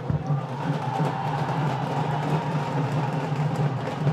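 Stadium atmosphere at a field hockey match: steady crowd noise with music and drumming over it, and a short low thump just after the start.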